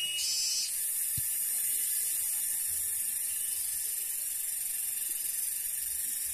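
Cicadas (tonggeret) buzzing in a steady, high-pitched chorus.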